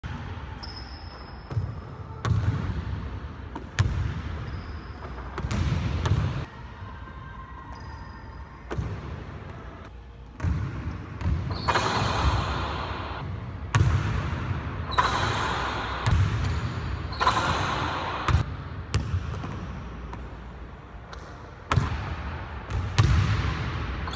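Basketballs bouncing on a hardwood gym floor: sharp thuds at irregular spacing that ring out in a large hall. There are a few short high squeaks and several longer noisy stretches between the bounces.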